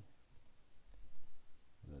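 Computer mouse clicking a few times, in two quick pairs about a second apart.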